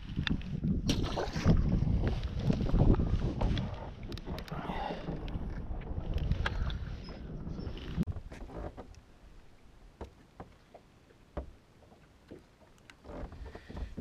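Wind rumbling on the microphone on an open fishing boat, then dying down to a quieter stretch broken by a few light knocks and clicks of handling on the deck.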